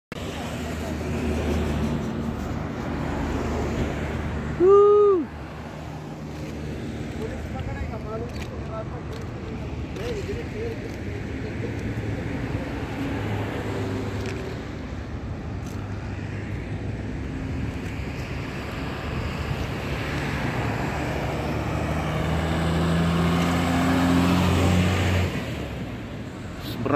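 Road traffic on a highway: a steady low engine hum and tyre noise from slow-moving vehicles. About five seconds in comes a brief loud pitched sound that rises and falls. Near the end a vehicle's engine note grows louder and climbs in pitch as it approaches.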